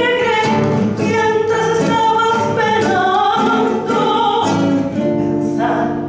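A woman singing a tango into a microphone, accompanied by a classical guitar, with a long held note near the end.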